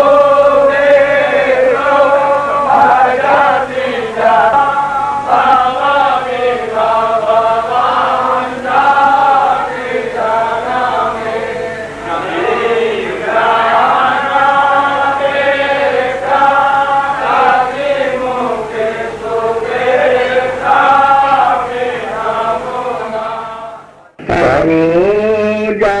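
Devotional chanting sung in a slow melody that rises and falls. Near the end it cuts out abruptly for a moment, then resumes.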